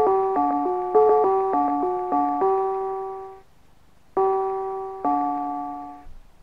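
Mr. Christmas Bells of Christmas (1991) brass bells chiming a Christmas tune in four-part harmony, chord after chord. The melody stops about three and a half seconds in, then after a short pause two final chords ring out and fade away.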